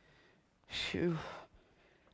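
A man's single sigh about a second in, breathy with a short falling voiced note, a mock show of weariness.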